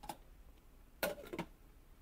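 Glass lid set onto a metal saucepan: a sharp clink about a second in, followed by a couple of lighter clicks as it settles.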